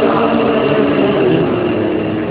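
A male reciter's chanted Quran recitation over a mosque loudspeaker, his sustained phrase giving way to a mixed murmur of many voices from the listeners in a reverberant hall.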